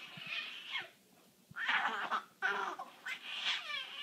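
Young baby letting out several short, high-pitched squeals, with a short pause about a second in.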